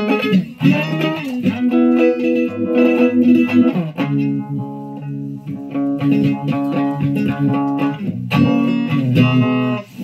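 Amplified Stratocaster-style electric guitar strumming ringing chords, changing chord every couple of seconds.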